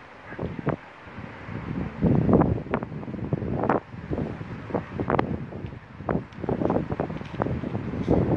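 Wind buffeting the microphone in irregular gusts, loudest about two seconds in and again through the second half.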